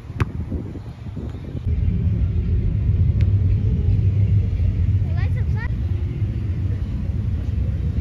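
A soccer ball kicked once with a sharp knock right at the start, then a loud, steady low rumble from about two seconds in, with a few short high chirps about halfway through.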